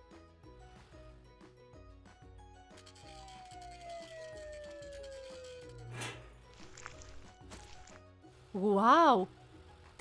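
Cartoon sound effects over soft background music: a slow descending whistle-like slide, then a sharp pop about six seconds in. Near the end comes a short, loud vocal exclamation from a character.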